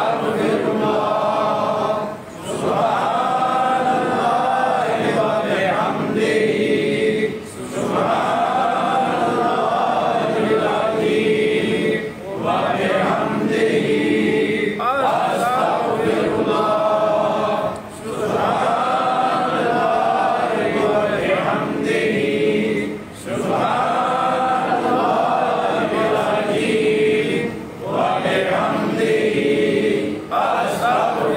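Zikr chanting: voices repeating the same devotional phrase in unison, with a short pause for breath about every five seconds.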